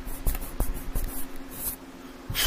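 Handling noise close to the microphone: a hand rubbing and bumping against the recording device, heard as a run of scratchy brushes and light knocks that die away about a second and a half in.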